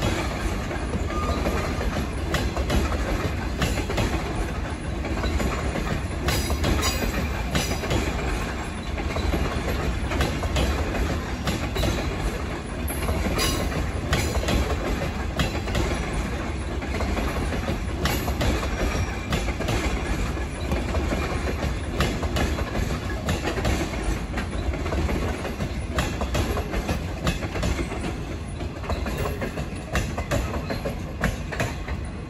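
A train of green passenger coaches rolling past, its wheels clicking over rail joints and points in an irregular clickety-clack over a steady rumble.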